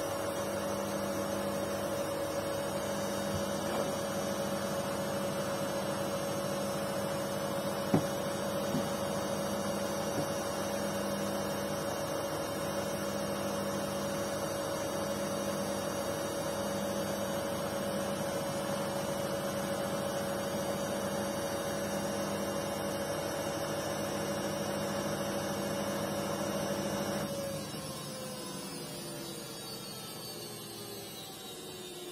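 LG Intellowasher 5 kg front-loading washing machine spinning at steady high speed, a whining motor tone over a slowly pulsing hum, near the end of its cycle. A few seconds before the end the drive cuts out and the whine falls in pitch as the drum coasts down. One sharp knock about eight seconds in.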